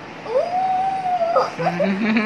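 A child's long drawn-out cry in play, rising at the start, held at one high pitch for about a second, then breaking off. Shorter vocal sounds follow near the end.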